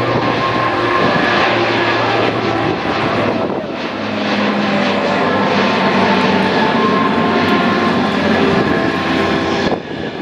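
C-130 four-engine turboprop transport flying past, its engines and propellers droning steadily, with several steady tones over a broad rushing noise.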